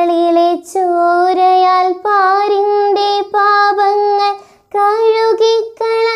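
A girl singing a Malayalam Christmas song solo and unaccompanied, in short phrases of long held notes.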